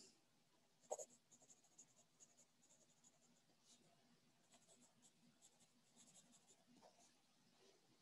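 Faint scratching of a pen writing on paper, in short irregular strokes, with a soft knock about a second in.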